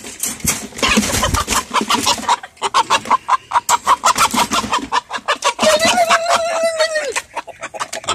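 Caged chickens clucking rapidly in alarm amid steady scuffling and rattling in the cage as a rooster is pushed in among them. About six seconds in, one bird gives a long squawk lasting over a second.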